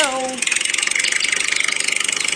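Tractor engine idling with a fast, even chugging that settles in about half a second in, after a short spoken "Go" at the start.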